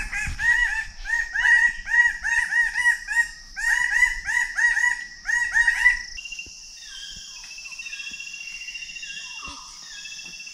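Birds of paradise calling: rapid runs of loud repeated notes, about three or four a second, that stop about six seconds in. A steady high insect drone remains after them.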